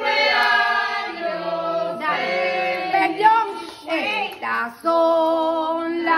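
Voices singing together in a group, holding long, wavering notes with short breaks between phrases.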